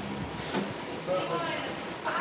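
Faint, indistinct voices over low background noise, with a brief rustle about half a second in.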